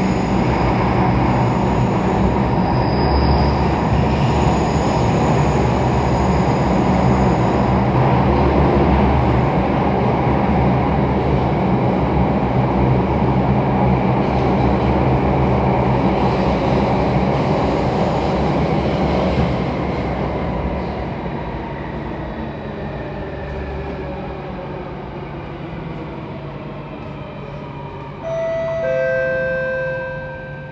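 Alstom Metropolitan C830 Circle Line metro train heard from inside the car: a loud, steady rumble of wheels and traction motors at speed. From about two-thirds of the way through, the noise falls away and the motor whine drops in pitch as the train brakes into the station. Near the end a two-note falling chime sounds.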